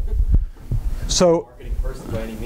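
Low, rumbling thumps from a clip-on microphone rubbing against the wearer's shirt and tie as he moves, followed by a man saying a single word.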